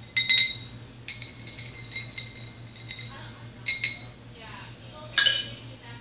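Metal bar spoon stirring a mixed drink in a glass, clinking against the glass several times with short ringing tings. A louder glass clink comes near the end.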